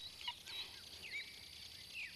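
Faint outdoor birdsong: a few short chirping calls over a steady high insect buzz.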